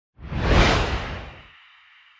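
Logo-sting whoosh sound effect with a deep low rumble under it: it swells in quickly, peaks about half a second in and fades away within about a second and a half, leaving a faint high shimmer.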